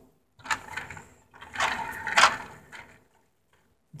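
Toy train engines being handled and shifted on their track, giving a few irregular clicks and rattles that stop about three seconds in.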